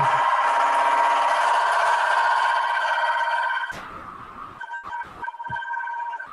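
A loud, shrill electronic ringing sound effect with two steady pitches, which cuts down sharply after about three and a half seconds to quieter broken beeps and a few clicks.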